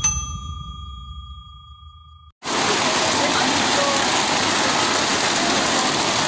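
A notification-bell ding from an intro's subscribe animation rings out for about two seconds over a fading low rumble, then cuts off. Then a steady, loud rush of heavy rain begins abruptly.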